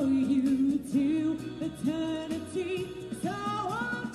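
A woman singing a song, with vibrato on held notes, over musical accompaniment that has a steady beat.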